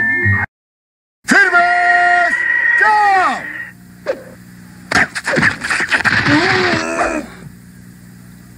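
Wordless cartoon voice: after a brief dead silence, a character makes loud drawn-out vocal sounds that slide down in pitch, then more short vocal noises a few seconds later.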